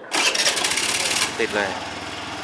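Honda Zoomer-X scooter's single-cylinder engine being remote-started through the alarm: the electric starter cranks loudly for about a second, then the engine catches and settles into a steady idle.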